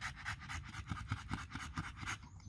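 An American Bully breathing quickly and audibly, a faint, even run of short breaths several times a second.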